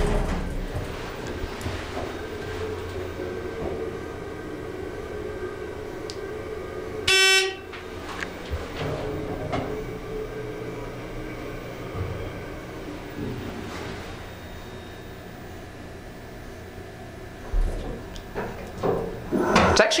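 2007 ThyssenKrupp hydraulic elevator travelling down one floor, a steady low hum from the hydraulics and the car's ride, nice and quiet. A short, loud buzzy tone sounds about seven seconds in. A few knocks near the end come as the car arrives and the doors open.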